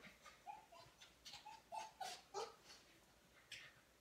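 A dog whining faintly in a string of short, high whines, with a few soft taps.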